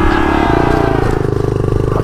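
Honda CRF70 pit bike's small single-cylinder four-stroke engine running under the rider, its pitch falling slowly as the throttle comes off, then settling into a low, even pulsing near the end.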